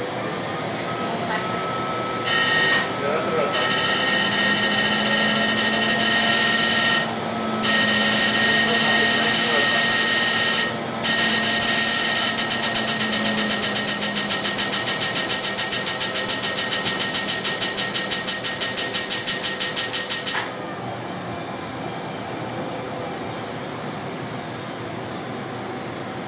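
Excimer laser firing during LASIK corneal ablation: a loud hiss with steady tones in three runs separated by brief pauses, then rapid even pulses at about six a second that stop suddenly about 20 seconds in. A steady machine hum runs underneath.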